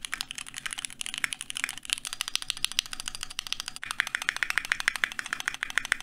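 Keychron Q2 mechanical keyboard with pre-lubed Gateron G Pro brown (tactile) switches being typed on quickly: a fast, dense, continuous run of keystroke clacks.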